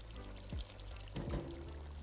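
Faint wet, liquid sounds from a pot of meat stew in its juices, with a couple of soft knocks, over quiet background music.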